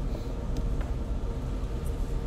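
Steady low background hum and rumble, with a few faint ticks.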